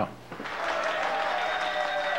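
Short burst of recorded applause, played as a sound effect to mark a taster's thumbs-up verdict; it swells in about half a second in and keeps going steadily.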